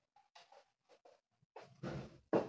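Whiteboard duster rubbed across a whiteboard, wiping off marker writing: a run of short, faint rubbing strokes, louder near the end.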